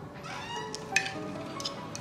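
A wooden door swinging open, its hinge giving a short rising creak followed by a few sharp clicks, over soft background music with held notes.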